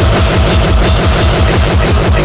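Speedcore/industrial hardcore music: a very fast, heavily distorted kick drum pattern with a high tone sweeping steadily upward over it.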